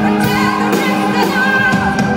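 A live band plays: a woman sings into a microphone over keyboards, electric guitar and drums, with drum hits about twice a second.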